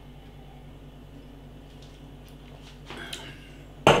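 A man sipping beer from a glass in a quiet room with a low steady hum. Just before the end there is one short sharp knock.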